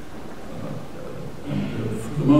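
A short pause in a man's speech filled by steady low rumble and hiss of the room; his voice comes back about one and a half seconds in.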